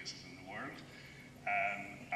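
Speech: a man speaking at a microphone, with a loud held syllable about one and a half seconds in.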